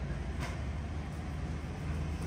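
Steady low background rumble, with a single sharp click about half a second in.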